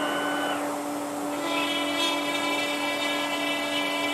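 CNC router spindle running at a steady pitch as a 3 mm end mill cuts pockets into a wooden board, with the hiss of the dust extraction. A higher whine fades out in the first half second, and a higher, many-toned whine joins about one and a half seconds in.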